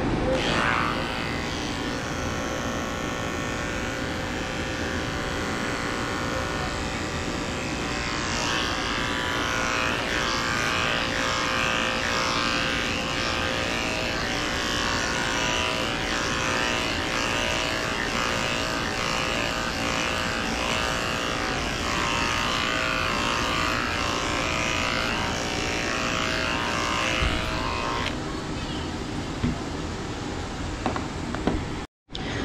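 Corded electric dog-grooming clippers running steadily while shearing a poodle's curly coat.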